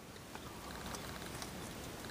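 Quiet, steady background hiss with a few faint soft clicks as a slice of pizza is raised and bitten into.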